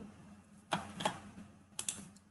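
A few short clicks of a computer mouse: one a little under a second in, a fainter one soon after, and a quick pair near the end.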